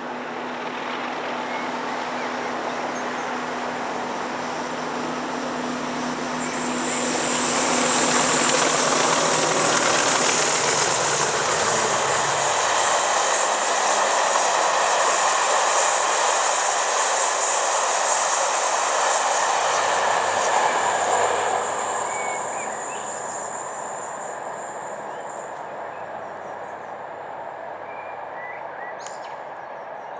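English Electric Class 40 diesel locomotive 40145 approaching and running past with its train of coaches. The engine's steady note and a high whine build up to the loudest part, about a quarter of the way in. The noise of the coaches rolling by on the rails follows, then fades away after about two-thirds.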